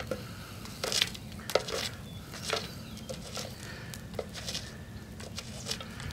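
A wooden stick scraping ash, coals and gravel away from the base of a tin buried in a fire pit: a few separate gritty scrapes over a low steady rumble.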